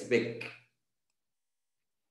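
A man's voice ends a short phrase in the first half-second, then dead silence, as if the audio is gated between phrases.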